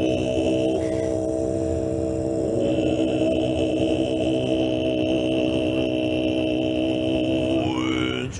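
Tibetan throat-singing: a deep chanting voice holds one low note with a dense stack of overtones. About two and a half seconds in, a high steady overtone comes in above it. Near the end the pitch glides upward into the next phrase.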